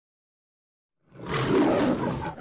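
A lion's roar in the manner of the MGM logo roar: silence, then a loud, rough roar that swells in about a second in.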